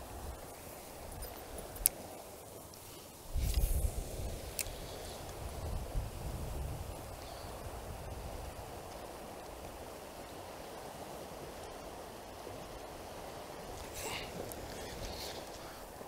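Steady rush of flowing stream water. Wind buffets the microphone about three seconds in and again around six seconds, and there is a single sharp click near two seconds.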